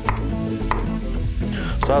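Chef's knife chopping mushrooms on a wooden cutting board: a few sharp knocks of the blade on the board. Underneath is the steady sizzle of ground beef browning in a hot skillet.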